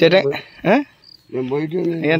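A man's voice in short bursts, one sharply rising in pitch.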